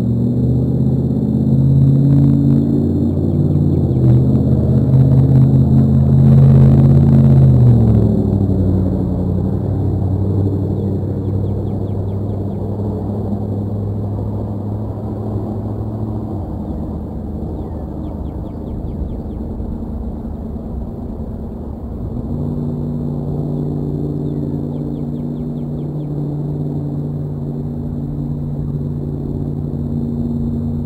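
A low mechanical drone of several steady tones, like an engine or machine running. Its pitch and level drop about eight seconds in and step up again a little after twenty-two seconds.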